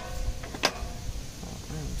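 Two sharp clicks about two-thirds of a second apart as a table saw's adjustment lock is clamped after the blade height is set, with a brief metallic ring after the first click. The saw's motor is not running.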